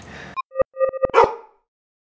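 Intro logo sting: a few short electronic blips, then a single dog bark about a second in that cuts off sharply.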